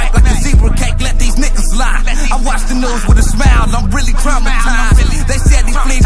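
Hip hop track: a rapped verse over a beat with deep, steady bass and a heavy kick drum.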